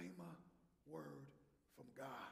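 A man's voice speaking quietly in two short phrases, one at the start and one about a second in.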